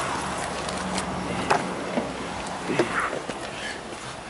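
Steady low hum of a Mitsubishi Montero Sport's engine idling, with a few light clicks and knocks of handling noise.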